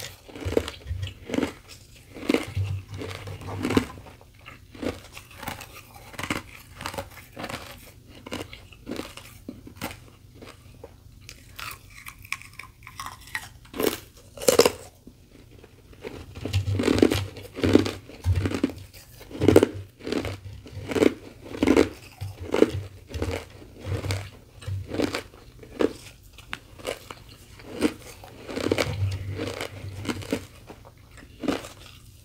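Close-miked chewing of powdery carbonated ice: rapid, crisp crunches in runs. The crunches are sparser and softer for the first half, then come louder and closer together from about halfway, with another busy run near the end.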